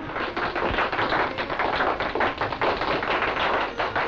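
A large crowd applauding: a dense, uneven patter of many hands clapping, held at an even level.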